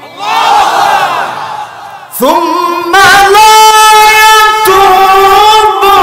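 A crowd of voices calling out together for about two seconds, then a man's voice chanting a long, held melodic line with little wavering in pitch.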